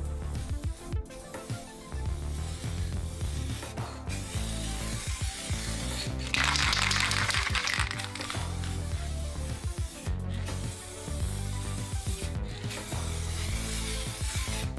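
Background music plays throughout. About six seconds in, an aerosol can of clear protective lacquer hisses in one spray pass of a little under two seconds, laying the second coat over a restored headlight lens.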